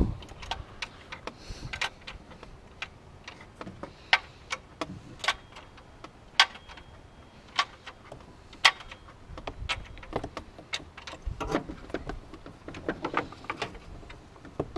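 Irregular sharp clicks and taps, a few of them loud, as a new drive belt is handled and fed down into a Nissan 350Z's engine bay.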